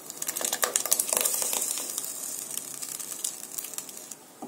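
Coconut paste being poured into a pan of simmering curry: a dense run of small crackles and wet splats, busiest in the first two seconds and thinning out towards the end.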